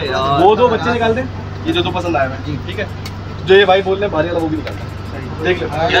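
Men talking, several short stretches of speech, over a steady low hum.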